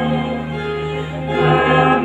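A choir singing a slow hymn in long held chords, moving to a new chord about a second and a half in.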